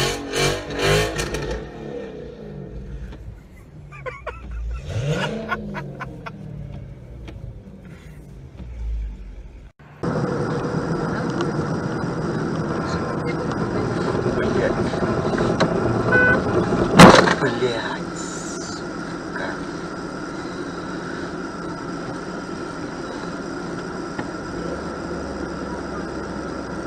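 A Dodge Challenger's engine revving up and down in snow over laughter. After a cut come steady in-car road noise from a dashcam and a single sharp crash partway through, as the dashcam car runs into the back of the SUV ahead on the snowy road.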